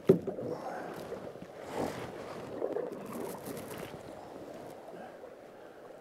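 Water swishing and splashing around a canoe drifting in fast river current, with the bow paddler's strokes in the water; a sharp knock right at the start.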